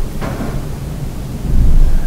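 Low, steady rumbling background noise on the recording, growing louder about a second and a half in.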